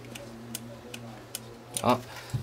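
Steady low electrical hum with light, evenly spaced ticks, about two or three a second. A single short spoken word comes near the end.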